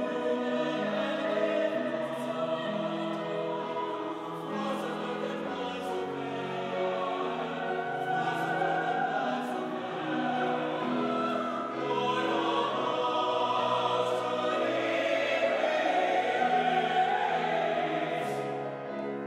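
Church choir of mixed voices singing together in sustained, moving parts, growing louder in the second half.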